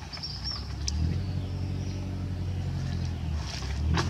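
Low, steady hum of a motor vehicle's engine running, coming in about a second in and easing off briefly near the end.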